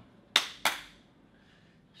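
Two sharp hand claps in quick succession, about a third of a second apart, a coach clapping for encouragement.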